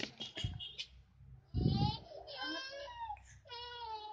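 A child's high-pitched voice making three drawn-out, crying-like wails, each held on a fairly steady pitch. A loud dull bump on the microphone comes about one and a half seconds in, at the start of the first wail.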